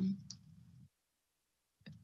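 A woman's hesitant "um" in mid-sentence, with a faint click just after it, then about a second of dead silence before her speech starts again near the end.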